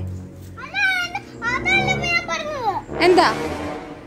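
A toddler's high-pitched wordless vocalizing, sliding up and down in pitch in two stretches, then a short breathy burst about three seconds in.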